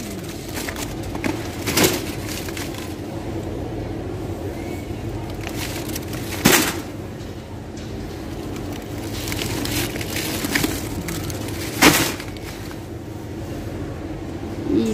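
Plastic-wrapped multipacks of bottled water being dropped into a metal shopping trolley: three sharp thumps about five seconds apart, the middle one loudest, over a steady low hum.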